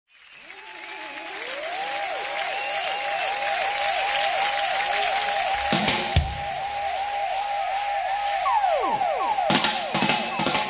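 A live band beginning a song: a repeating swooping tone about three times a second over a haze of audience applause, a deep hit about six seconds in, and a few sharp drum hits near the end as the drum kit comes in.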